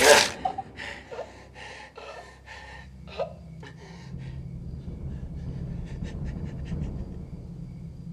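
A man panting and gasping hard for breath in quick short breaths that fade after about three seconds; then a low steady hum sets in.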